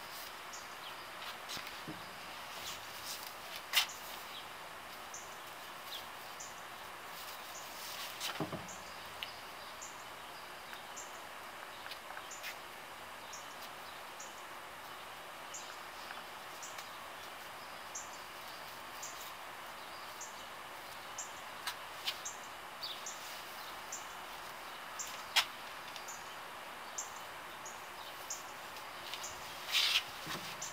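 Steady outdoor background hiss with a small bird chirping, short high chirps repeated about once a second. A few sharp clicks and knocks stand out now and then, the loudest about four, eight and twenty-five seconds in.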